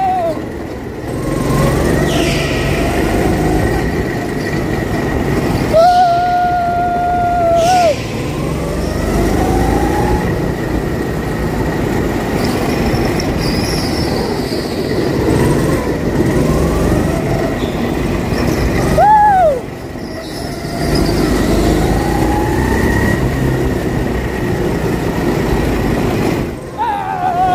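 A go-kart engine runs under throttle with the rumble of the kart at speed. A high squeal, typical of kart tyres sliding through a corner, sounds twice: held for about two seconds near 6 s, then a short rising-and-falling one at about 19 s.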